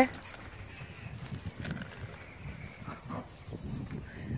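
Faint, irregular steps scuffing over loose gravel.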